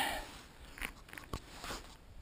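A few faint, short clicks and knocks from handling a rifle.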